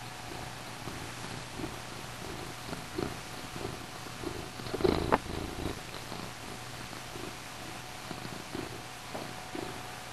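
Domestic cat purring in soft repeated pulses as it kneads with its paws, with a louder bump and click about five seconds in.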